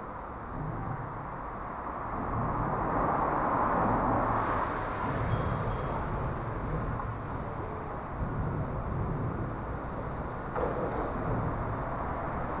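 Steady road-traffic rumble under a concrete flyover, swelling a few seconds in and easing off again.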